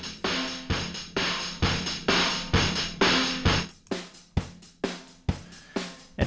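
Aggressive drum kit groove (kick, snare, hi-hats, cymbals) played through the Airwindows MidAmp clean-combo amp-sim plugin, which dirties it up with a rolled-off top end. A little past halfway the top end opens up and the hits turn crisper and more separate, as the plugin is dialled back to dry.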